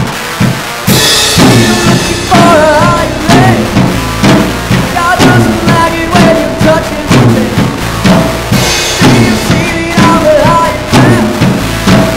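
Live rock band playing: drum kit keeping a steady beat with bass drum and snare, under electric guitar and electric bass. A cymbal crash comes about a second in and again near nine seconds.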